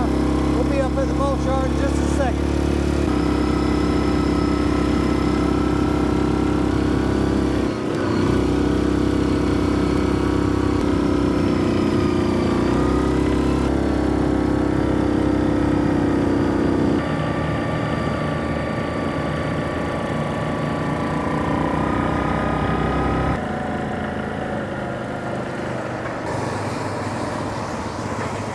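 Four-wheeler (ATV) engine running steadily under way on a dirt track, with wind on the microphone. The engine note shifts abruptly several times and drops to a quieter, lower sound near the end.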